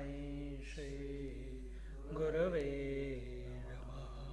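A man chanting a mantra in long held notes. His voice wavers up and down in pitch in the loudest passage, a little past halfway, over a steady low hum.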